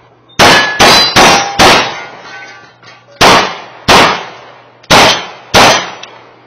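Eight shots from a CK Arms 9mm major Open-division race pistol with a red dot: four quick shots about 0.4 s apart, a pause, then two pairs. Thin ringing tones after some shots are steel targets being struck.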